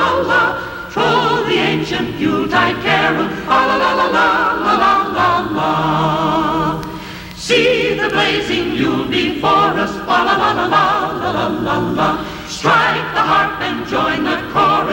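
A choir singing Christmas music, many voices with vibrato, with a short break between phrases about seven seconds in.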